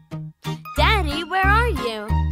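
Bouncy children's song music with a pulsing bass line and tinkling high notes; about a second in, a voice slides up and down in pitch for about a second over the music.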